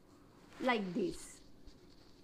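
One brief spoken word from the narrator's voice, falling in pitch and ending in a short hiss, followed by faint room tone.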